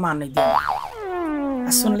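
Comic "boing"-style sound effect: a twangy pitched tone that wobbles up and down and then slides slowly down in pitch for over a second.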